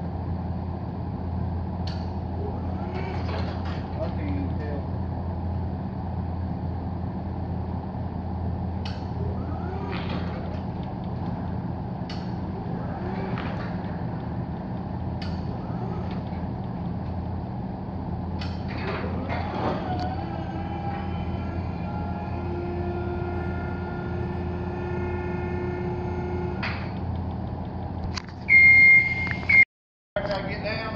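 Genie GS-1930 electric scissor lift's hydraulic pump motor running with a steady low hum as the platform goes up, with a few light clicks. A higher whine joins in for a few seconds past the middle. Near the end a loud, high beep sounds for about a second.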